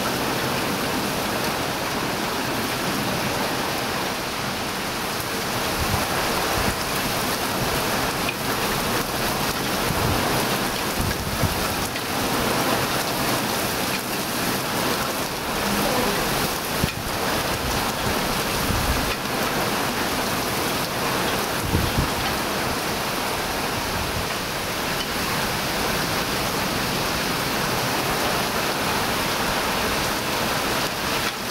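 Summer storm rain falling steadily on garden trees and plants, a dense even hiss, with a few short low rumbles.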